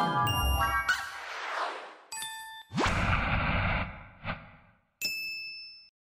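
Cartoon-style sound effects for an animated logo: a falling tone with ringing dings, a chime about two seconds in, a quick rising swoop just after, and one last bright ding about five seconds in that rings out.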